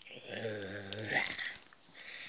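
A person's low, drawn-out grunt held on one pitch for about a second, ending in a breathy hiss.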